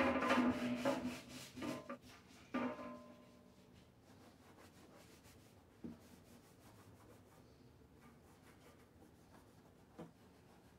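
A cloth rag wiping and rubbing the sheet-metal case of a Hobart plasma cutter, wet with glass cleaner, in several strokes over the first three seconds. After that it falls to near silence, with one small knock about six seconds in.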